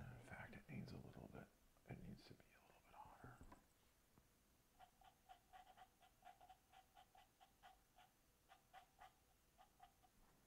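Faint, rapid light tapping of a paintbrush dabbing on a stretched canvas, about three or four taps a second, starting about halfway through. Before it comes a few seconds of quiet whispered mumbling close by.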